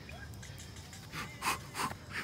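Three short breathy puffs in the second half, quick gasps or panting breaths close to the microphone.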